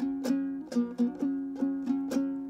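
Dombra, the two-stringed plucked lute of the bakhshi singers, strummed in a quick, uneven run of strokes over a steady two-note drone.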